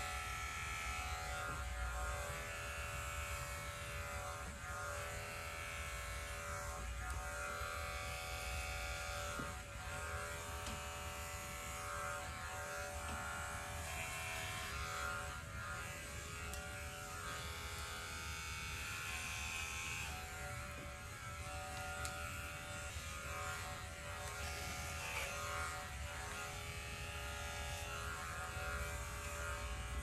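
Corded electric hair clippers with a guard comb buzzing steadily as they are run over the scalp, cutting the hair down to a short buzz cut.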